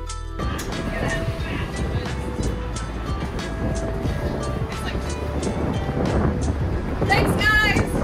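Construction-site noise at a personnel hoist: a steady rumble with scattered knocks and clanks as workers step out of the hoist car. Music cuts out about half a second in, and voices call out loudly about seven seconds in.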